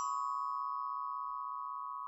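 A 32-note glockenspiel's metal bars ringing on after mallet strikes, a few close notes held together and slowly fading, with no new strike.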